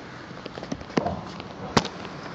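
Handling noise from a handheld phone being moved about: a low rustle with two sharp knocks, the second one, near the end, the loudest.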